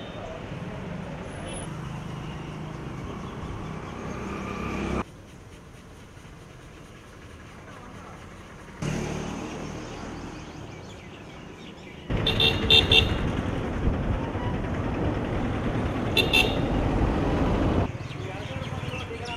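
Street traffic noise with vehicle engines, changing abruptly at cuts, and horns honking in short toots twice in the louder second half.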